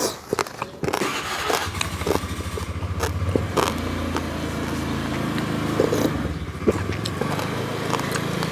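A small engine running steadily from about a second in, with sharp clicks of a spoon and eating sounds over it.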